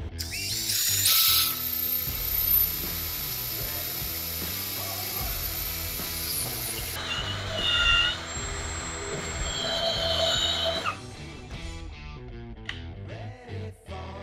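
Cordless drill running a combination drill-tap bit down through mild steel plate, drilling, cutting the thread and countersinking in one pass. The sound changes about seven seconds in and stops about eleven seconds in, followed by a few light clicks.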